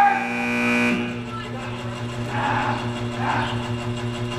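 A person's shout held on one steady note for about a second, then a steady low hum with faint distant voices.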